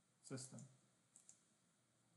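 Near silence in a small room. A brief faint voice sound comes near the start, then a quick pair of faint computer mouse clicks about a second in: a right-click opening a context menu.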